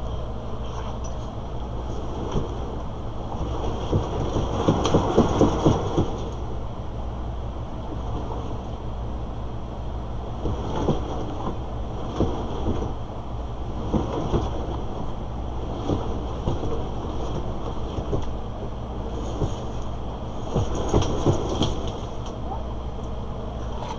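Cat exercise wheel (One Fast Cat) turning under a cat: a steady low rumble with irregular clicks and knocks, thickest about four to six seconds in and again near the end.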